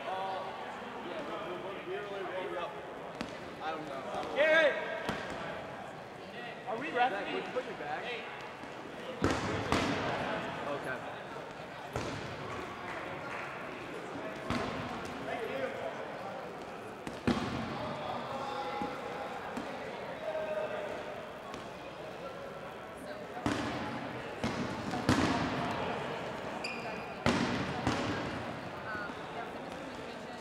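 Dodgeballs bouncing and thudding on a hardwood gym floor at irregular intervals, over a background of players' chatter in a large, echoing gym.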